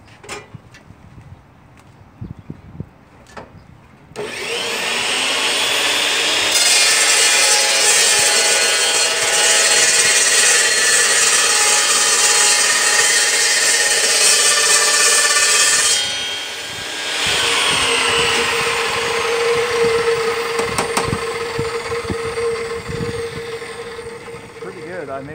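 Metal-cutting cold saw cutting through a piece of angle iron. The motor starts about four seconds in, and the blade bites into the steel a couple of seconds later with a loud, high grinding screech that lasts about ten seconds. Once it is through, the motor runs on with a steady whine that fades near the end.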